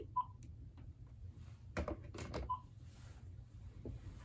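Cordless phone handset giving two short beeps about two seconds apart, with a few sharp clicks and knocks between them as the handset is set down into its charging base.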